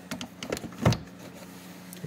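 Handling noise: a handful of light clicks and knocks on the plastic ride-on toy car body in the first second, the loudest just under a second in, then a faint steady hum.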